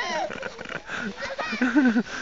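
A young child's voice making short wordless sounds and babble, pitched and sliding up and down.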